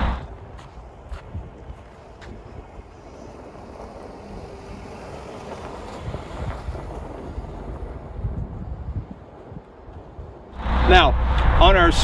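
A Mercedes-Benz GLB 250 rolling slowly past over snow: a low, even hiss and rumble of tyres and engine that swells as it comes closest and then fades, with wind on the microphone.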